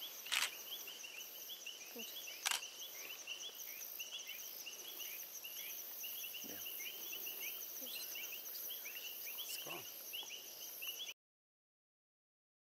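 Night-time chorus of insects chirping rapidly and steadily, over a continuous high-pitched trill, with two sharp clicks in the first few seconds. The sound cuts off abruptly near the end.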